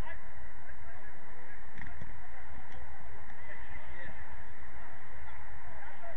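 Open-air pitch ambience: wind rumbling on the microphone, with faint distant calls and a few sharp knocks between about two and three and a half seconds in.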